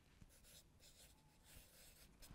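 Felt-tip marker writing on flip-chart paper: faint, quick pen strokes as figures are written.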